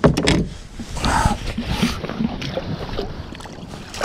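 Handling noises aboard a plastic fishing kayak: a sharp knock at the start, then scattered light knocks and rustling of gear against the hull, with water splashing near the end as the landing net goes into the water.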